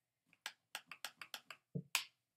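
A spiral-bound sketchbook being handled and shifted on a table: a quick run of about seven light clicks, then a dull thump and one sharper click near the end.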